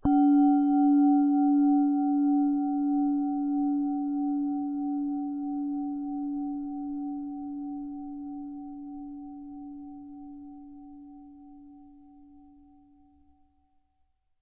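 A singing bowl struck once, ringing with a clear low tone and higher overtones. Its loudness wavers gently as it fades slowly away over about fourteen seconds. The strike closes the meditation.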